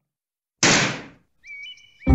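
Cartoon title-card sound effect: a sudden noisy burst a little over half a second in that dies away within about half a second, followed near the end by a few short high-pitched tones.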